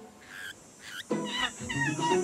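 Monkeys chattering and squealing: a quick run of short high calls that rise and fall, starting about halfway in, over soft background music.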